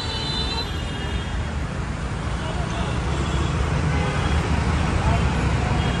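Steady road traffic and engine rumble heard from the open upper deck of a moving tour bus in city traffic, with faint voices.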